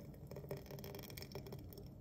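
Faint sound of a thick smoothie pouring from a blender jar into a glass mason jar, with a couple of faint ticks.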